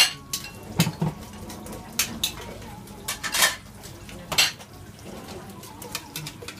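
Restaurant kitchen clatter: ceramic bowls, ladles and steel pots knocking and clinking in sharp, irregular strikes, about one every second or so, over a steady low hum.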